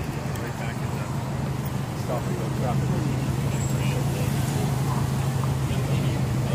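A vehicle engine runs with a steady low hum that grows louder about halfway through, with people talking faintly in the background.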